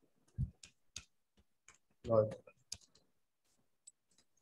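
Typing on a computer keyboard: irregular, separate key clicks. A brief spoken word comes about two seconds in.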